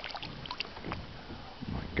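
Faint splashing and lapping of lake water as a northern pike thrashes at the surface with a hooked walleye in its jaws, a few small splashes in the first second.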